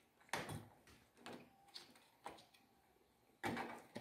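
A few faint, short clicks and taps of plastic parts being handled, as the trigger and spring are worked into a pressure-washer spray gun's plastic housing, with a brief louder rubbing noise near the end.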